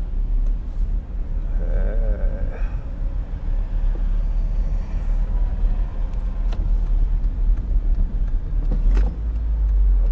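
Inside an open-top Toyota MR-S on the move: a steady low rumble of wind and road noise, with the car's mid-mounted 1ZZ-FE four-cylinder engine running beneath it. The engine runs smoothly, without a harsh edge, which the driver credits to the molybdenum oil additive.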